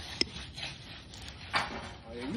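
Faint scraping of a concrete finishing broom drawn over a freshly poured concrete deck, with a sharp click shortly after the start and a brief louder rasp about three-quarters of the way through.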